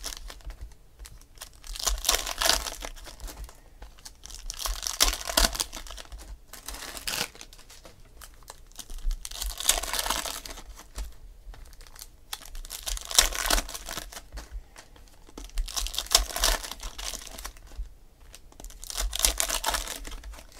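Foil trading-card pack wrappers being torn open and crinkled by hand, in repeated bursts every two to three seconds.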